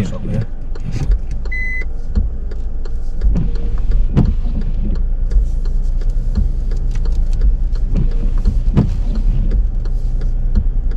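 Car engine running at low revs, heard from inside the cabin as a steady low rumble, while the car reverses slowly into a parallel parking space. A single short electronic beep sounds about a second and a half in, among scattered light clicks and knocks.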